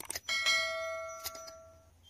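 A notification bell 'ding' from a subscribe-button overlay, after a couple of quick mouse-like clicks. It rings with several bright tones and fades out over about a second and a half.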